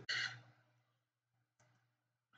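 A person's short breath out, lasting about half a second at the very start, followed by near silence.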